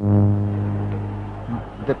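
A loud, low, steady horn-like tone that starts suddenly and fades slowly over about a second and a half, then breaks off as a man's voice begins.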